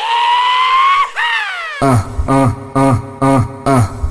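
Brazilian funk automotivo music. The bass and beat drop out while a held synth tone rises slowly and then slides down. About two seconds in, the heavy bass beat comes back, pulsing a little over twice a second.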